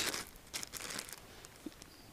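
Faint, intermittent crinkling of a clear plastic bag of coffee beans as it is handled.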